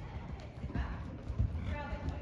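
Horse's hooves thudding at a canter on a soft indoor arena surface, the loudest beat about a second and a half in, with a voice faintly heard near the end.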